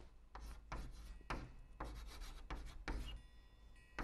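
Chalk writing on a blackboard: a quick run of short scraping strokes as a Chinese character is written, stopping about three seconds in.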